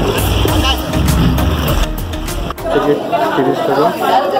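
A low rumble with music behind it, broken by a sudden cut about two and a half seconds in. After the cut, people chatter indoors.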